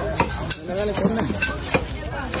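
A large cleaver-like knife chopping through mahi mahi onto a wooden log block, with about four sharp strikes and background voices.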